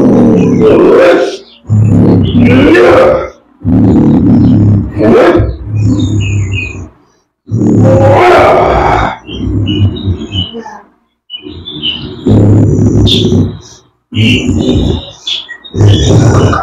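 A man roaring and growling in loud, animal-like bursts, about nine cries of a second or two each with short breaks between them, in the manner of a person in a possession trance (kesurupan).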